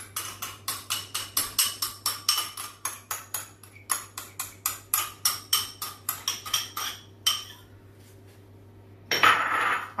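A metal spoon clinking rapidly against a small glass bowl, about four or five sharp clicks a second, as it scrapes fried tomato sauce out into a frying pan. The clinking stops after about seven seconds, and a short burst of hiss follows near the end.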